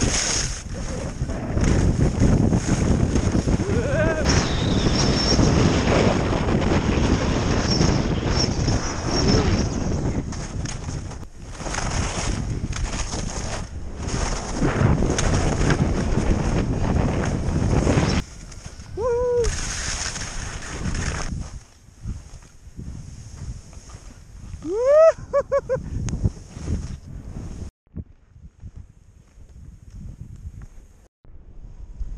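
Wind buffeting the microphone of a skier running fast downhill on snow, loud and rushing for the first two-thirds, then dropping away. Two short rising cries break through, the second and louder about 25 seconds in.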